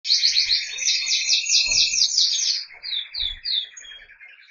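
Zebra finches calling and singing: a fast run of repeated high chirps for about two and a half seconds, then three separate short notes.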